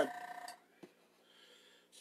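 A steady machine hum of several tones cuts off about half a second in, leaving near silence broken by one faint click.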